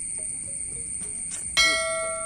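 A single bright bell ding, struck suddenly about one and a half seconds in and ringing on as it fades. Behind it is a steady high insect drone.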